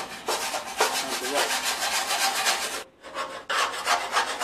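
Hand wire brush scrubbing surface rust off a steel bumper reinforcement beam in rapid back-and-forth strokes, several a second. The scraping breaks off briefly near three seconds and then starts again.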